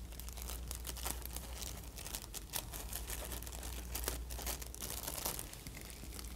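Thin clear plastic stethoscope barrier bag crinkling faintly in many small, irregular crackles as a stethoscope's chestpiece is worked into it by hand.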